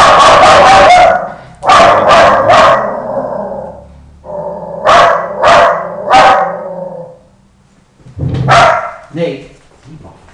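A dog barking loudly in groups: a long run of barks at the start, then three barks, then three more, and a last bark or two near the end.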